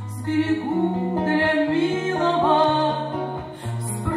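Acoustic guitar accompanying women's singing, with plucked bass notes stepping under the melody. The sound comes from a voice recorder.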